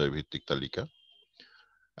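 A man's voice speaking in the first second, then a short pause holding only a faint thin tone.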